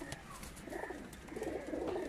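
Several domestic pigeons cooing, low and overlapping, growing fuller in the second half.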